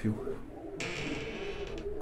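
Domestic pigeons cooing softly in a loft, with a brief soft rustle about a second in.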